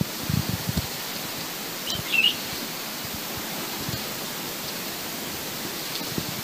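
Steady outdoor background hiss with a few soft low knocks in the first second and a short bird chirp about two seconds in.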